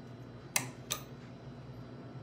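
Two sharp, light clicks about a third of a second apart, a little way in, over a low steady room hum.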